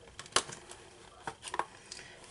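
A few light clicks and taps of a packaged craft embellishment kit being handled on a desk, the sharpest about a third of a second in.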